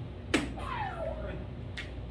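A single sharp snap about a third of a second in, the loudest sound here, followed by a falling tone and a fainter click near the end.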